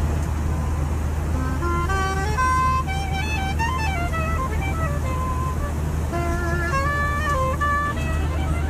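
Soprano saxophone playing a slow melody of held notes and short stepping runs, over the steady low drone of an airliner cabin, as picked up by a passenger's phone.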